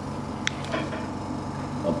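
Steady low hum of running equipment, with a single sharp click of a clear plastic container being handled a little before the middle.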